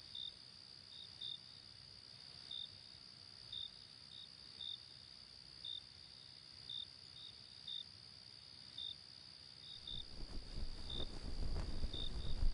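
Crickets chirping: a steady high trill with short chirps repeating about once a second. About ten seconds in, rustling of bedding comes in and grows louder.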